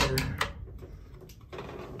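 A steel slide bolt latch on a wooden trailer door being worked by hand, giving a few short metallic clicks in the first half second.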